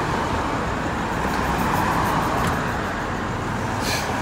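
Road traffic noise of cars driving past on the street, a steady rush of tyres and engines that swells a little in the middle.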